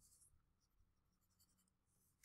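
Near silence: room tone with a few faint, light scratchy ticks.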